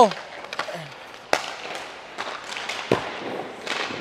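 A hockey puck shot with a sharp crack off the stick, then about a second and a half later a deeper thud of the puck striking the goaltender's equipment as he makes the save.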